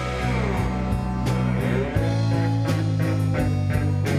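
Live rock band playing an instrumental stretch between vocal lines: electric guitar, electric bass, keyboards and drum kit, with a lead line that bends down in pitch near the start.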